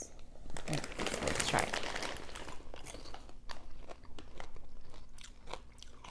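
Crunching and chewing of hard-shelled, candy-coated popcorn close to the microphone. It starts with a dense stretch of crunching in the first couple of seconds, then continues as a run of short, sharp crunches.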